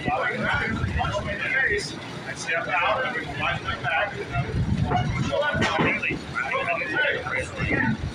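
Indistinct voices talking, with shuffling footsteps and a thud on a wrestling ring's canvas about halfway through.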